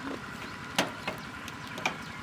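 A few light knocks and clicks of the single-seed seeder's metal sieve trays and frames being handled, the loudest just under a second in.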